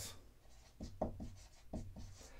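Dry-erase marker writing on a whiteboard: a handful of short, faint scratchy strokes, mostly in the second half.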